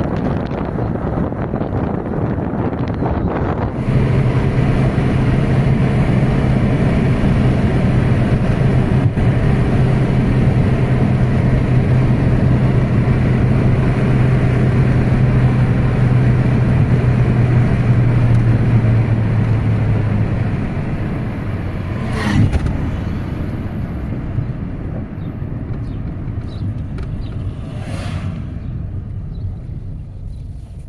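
A car driving along a road: steady engine and road noise, with a low engine hum that sets in about four seconds in and fades out about two-thirds of the way through. Two sharp clicks come in the last third.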